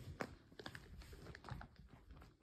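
Faint, irregular light clicks and taps of footsteps on a tile floor.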